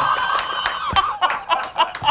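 Two men laughing hard together, breathy, in uneven bursts.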